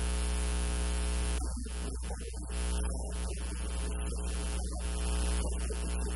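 Steady electrical mains hum with a stack of buzzing overtones and a hiss of static over it, unchanging throughout.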